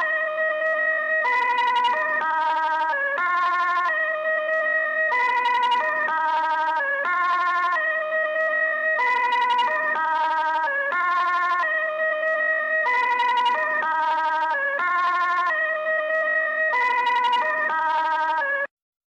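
Electronic dance track reduced to a lone synth riff, with no drums or bass. It is a siren-like melody stepping between a few notes about twice a second.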